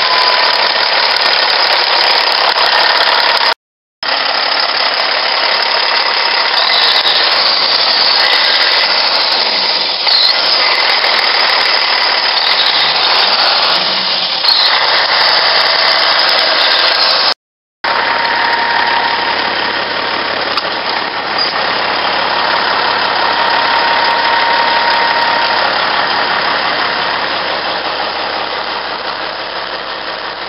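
Caterpillar C15 diesel engine of a 2002 Peterbilt 379 idling steadily, heard up close at the open engine bay. The sound cuts out briefly twice, about four seconds in and again about seventeen and a half seconds in.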